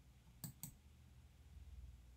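Computer mouse button clicked: two faint, sharp clicks about a fifth of a second apart, over a faint low hum.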